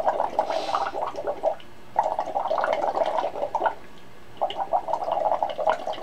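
Air blown through drinking straws into cups of water, bubbling in three bursts of a second and a half to two seconds each with short pauses between. This is the circular-breathing practice drill, where the bubbles should stay even as the blowing changes from diaphragm air to the puff of the cheeks.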